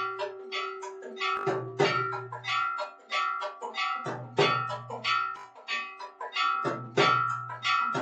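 Devotional aarti music: a steady pattern of sharp, bell-like metallic strikes, a few a second, over ringing tones and a low hum that comes and goes in stretches of about a second.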